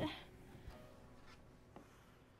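The last sung note fades out with a short room tail at the very start. Then a nearly quiet studio room holds a few faint rustles and soft clicks as the players move after the song.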